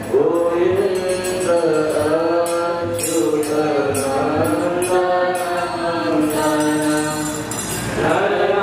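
A group of young male students chanting a Sanskrit hymn (stuti) in unison through microphones, in long held notes that glide up and down.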